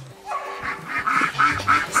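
Ducks quacking in a rapid, overlapping run of short calls, about six a second, starting shortly after a brief lull.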